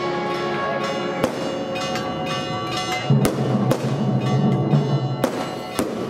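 Procession band playing a slow funeral march: held chords over a pulsing low bass line, with struck drum beats at irregular spacing.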